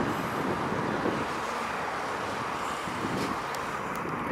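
Steady street traffic noise, an even hum of vehicles with no single distinct event.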